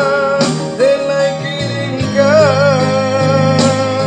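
A man singing a Minang song in long held notes with a wavering vibrato, over an electronic keyboard playing sustained chords and a steady bass line.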